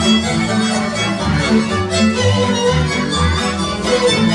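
Hungarian folk dance music from a string band: a fiddle carrying the melody over bowed string accompaniment and a moving bass line, played at a steady dance pulse.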